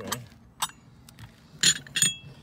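Glass ashtrays clinking and clattering as they are handled and set down on a table: a short clink about half a second in, then a louder clatter and a ringing clink near the end.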